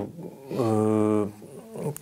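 A man's drawn-out hesitation sound, a long steady 'eee' held at one pitch for about a second, between phrases of speech.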